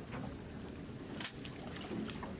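Wind and water noise around a small open boat, with one short sharp sound just over a second in.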